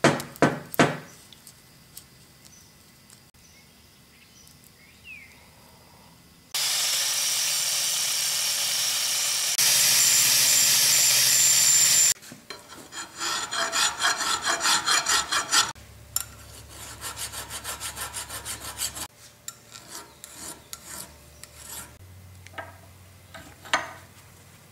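Angle grinder grinding the cast-iron housing, running steadily for about five and a half seconds and getting louder partway through. After it come quick rhythmic rasping strokes of hand work on the metal, then scattered light knocks.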